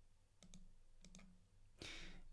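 Near silence broken by faint computer mouse clicks, two quick pairs about half a second and a second in, then a brief soft rush of noise at the very end.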